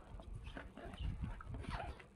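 Packaging of a bed-linen set being handled and opened by hand: irregular rustling and crinkling with soft knocks and bumps, heaviest about a second in.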